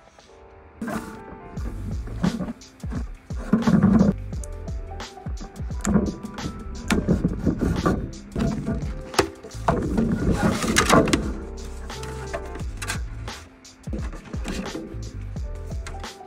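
Background music with a low bass line, over hands tapping, scratching and sliding on a cardboard product box as it is opened, with many short sharp taps and clicks. Near the end the cardboard gives way to the handling of a foam packing insert.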